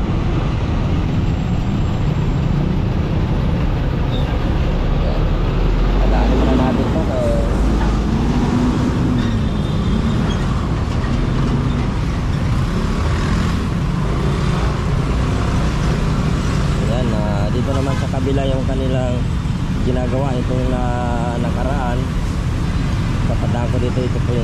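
Steady low rumble of wind and road noise on a handlebar-mounted camera while a Yamaha scooter rides slowly through dense traffic, with cars and trucks around it. A voice talks briefly a few times over the noise.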